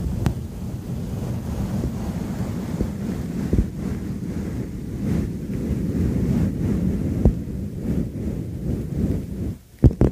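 Hands rubbing over the bowl of an upturned stemmed wine glass held against the microphone, making a steady, muffled, low rushing sound. A few light taps come through about three seconds apart.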